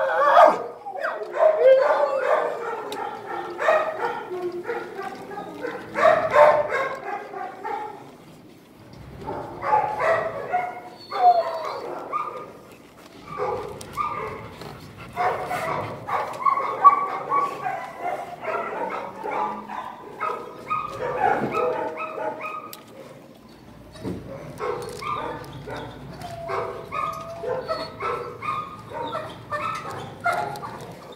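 Dogs barking, yipping and whimpering in a shelter kennel, in bursts almost without pause, with two short lulls around a third and three-quarters of the way through.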